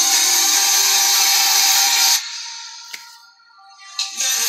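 Background music that stops abruptly about halfway through, leaving a few held notes fading away and a faint click, before the music starts again at the very end.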